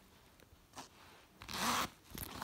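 A backpack zipper pulled once in a single quick zip about one and a half seconds in, after a faint rustle of the bag being handled.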